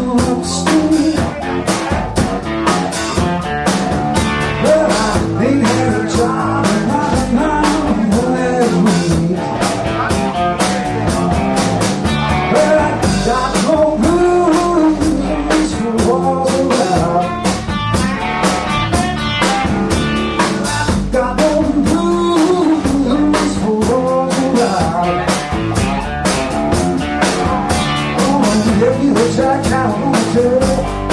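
Live blues band playing: electric guitar, electric bass and drum kit with a steady beat, the guitar lines bending in pitch.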